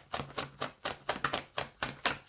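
A tarot deck being shuffled by hand: an irregular run of quick papery clicks and taps as the cards slide against each other.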